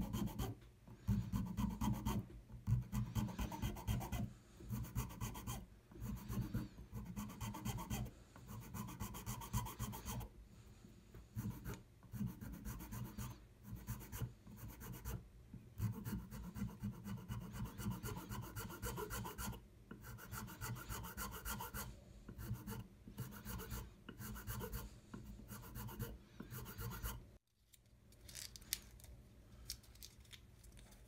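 A small needle file rasping back and forth on a small wooden model part clamped in a vise, in runs of quick strokes with short pauses between them. The filing stops suddenly near the end, leaving only faint rubbing.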